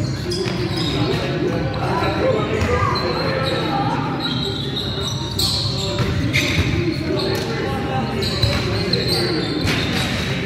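Indoor basketball game on a wooden sports-hall floor: a basketball bouncing, short high sneaker squeaks and players' voices, all echoing in the large hall.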